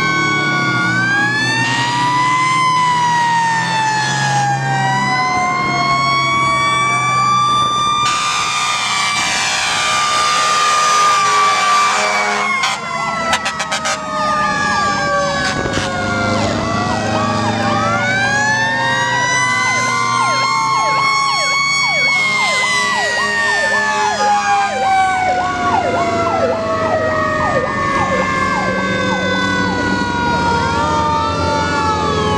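Several fire trucks' sirens sounding at once: long wails that wind up and slowly wind down, overlapping one another, joined about halfway through by a fast warbling siren. A loud horn blast lasts about four seconds, starting some eight seconds in.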